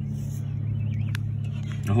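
A motor running steadily with a low, even hum, and a single sharp click a little over a second in.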